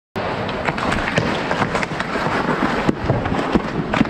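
Ice hockey skates scraping and carving on the ice in a steady rush of noise, with a run of sharp clacks from sticks and puck at close range.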